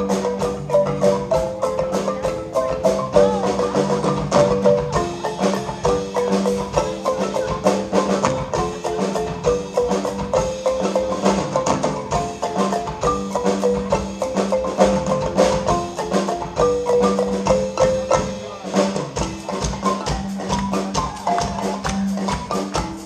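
Marimba ensemble playing an upbeat piece, several marimbas struck with mallets in fast, rhythmic repeated notes.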